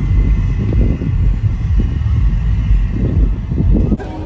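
Wind buffeting a phone microphone: a loud, uneven low rumble.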